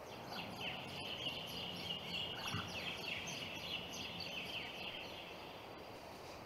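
A bird calling in a quick run of falling chirps, starting about half a second in and stopping near the end, over a steady outdoor hiss.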